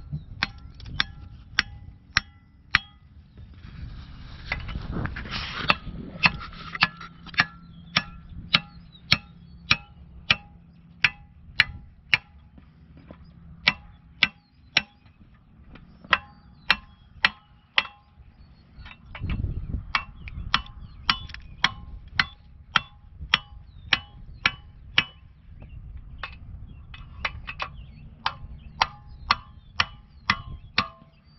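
A hammer striking a steel fence stretcher bar on woven V-mesh wire as the bar is put together: a long run of sharp blows, roughly two a second, each with a brief metallic ring, with a few short pauses.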